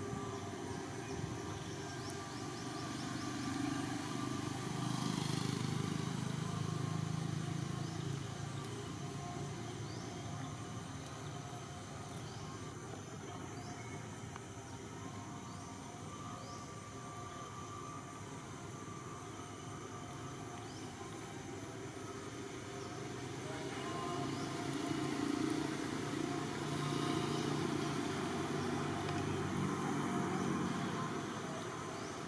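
Low motor-vehicle engine rumble of passing traffic, swelling a few seconds in, fading, then swelling again near the end, over a steady outdoor background.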